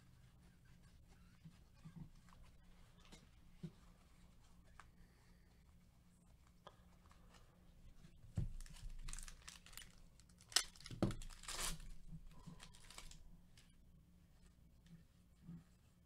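Faint soft ticks of baseball cards being flipped through by gloved hands, then, about halfway through, a few seconds of crackling and sharp rips as a Topps Series 2 card pack wrapper is torn open.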